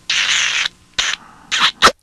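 Exaggerated stage kissing noises: a long hissing smooch, then a few short smacks ending in a sharp pop near the end.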